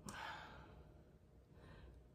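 Near silence with a woman's faint breathing: a soft breath at the start, fading within half a second, and a weaker one near the end.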